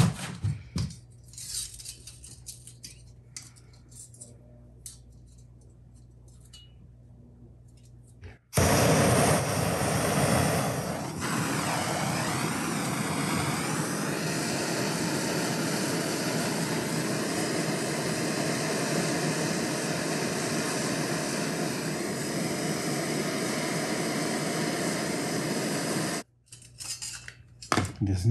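A handheld gas torch burning with a steady hiss as its flame heats the clamped joint of a brass band. It lights suddenly about eight seconds in and cuts off sharply a couple of seconds before the end. Before it lights there are only faint light clinks of metal being handled.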